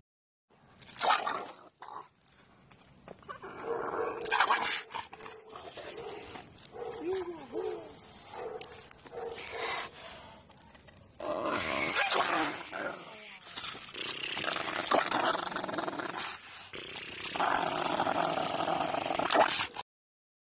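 A large pit bull-type dog barking repeatedly, with people's voices mixed in.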